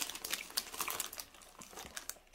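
Small Mini Cheddars snack packet crinkling and rustling as a hand reaches into it for a biscuit, a run of small crackles that thins out toward the end.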